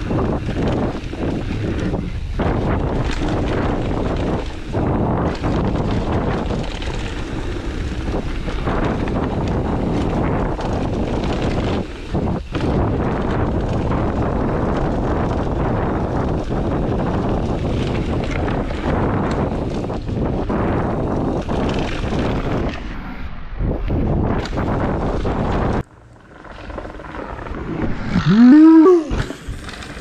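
Wind rushing over the helmet-camera microphone and the Transition Sentinel 29er's tyres rolling and rattling down a loose dirt trail at speed. About 26 seconds in the noise cuts out suddenly. Moments later a loud cry, rising and falling in pitch, comes as the rider crashes.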